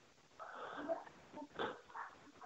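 Faint breathy sounds from a person on a telephone line, a short stretch about half a second in and a couple of brief puffs later.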